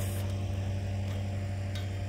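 A steady low mechanical hum, with no change in pitch or level.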